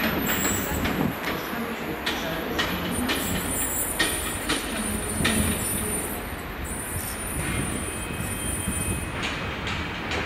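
A Class 197 diesel multiple unit runs in slowly over the station points: steady running noise, with sharp wheel clicks over the rail joints and a thin, high wheel squeal from about three seconds in until near the end.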